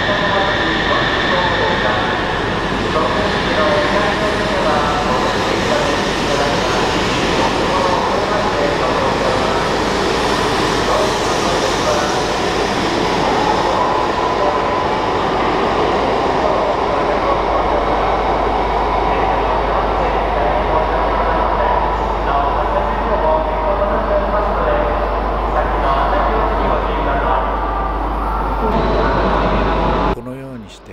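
A Shinkansen train pulling out of the platform and running past, a loud steady rush of wheel and running noise.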